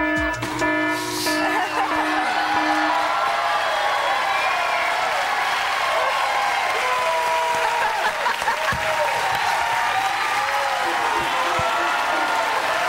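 A short electronic game-show sound cue of steady held tones opens, with a brief hiss about a second in. A studio audience then cheers, screams and applauds.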